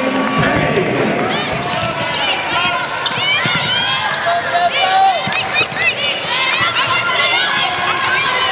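Natural game sound of a women's basketball game on a hardwood court: a basketball dribbling, sneakers squeaking in short high chirps, and players' voices calling out.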